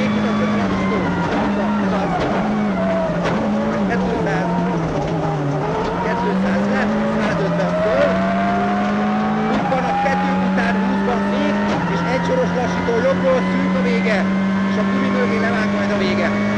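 Ford Focus WRC rally car's turbocharged four-cylinder engine pulling hard at high revs, heard from inside the cabin. The engine note dips and recovers about four to six seconds in, then holds steady, while a higher tone climbs steadily in pitch from about six seconds on.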